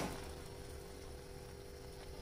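Water boiling with cut long beans in a pan, a faint steady bubbling, just after a brief knock at the start.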